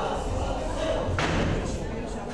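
Background voices echoing in a large hall, with a single sharp thud about a second in.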